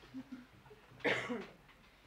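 A short cough about a second in, after a couple of faint low vocal sounds.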